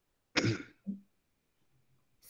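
A person clears their throat with one short cough about a third of a second in, followed by a brief voiced sound just after.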